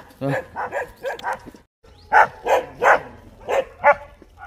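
Dogs barking, a string of short separate barks with a brief gap before the middle; the loudest barks come in the second half.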